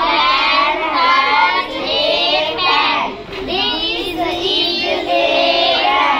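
A group of schoolgirls singing together in high voices, without pause apart from a brief dip about three seconds in.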